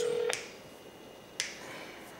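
A telephone call tone on speakerphone: a steady single-pitched tone that stops about a third of a second in, followed by one sharp click about a second later, while the outgoing call waits to be answered.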